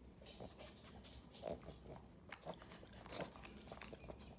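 A pug sniffing at close range, heard as a few short, faint bursts.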